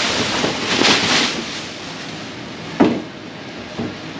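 Thin plastic sheeting rustling and crinkling loudly as a large plastic-wrapped Lovesac bean bag is pulled down and tumbles off a stack, easing off after the first second or so, with one sharp short sound nearly three seconds in.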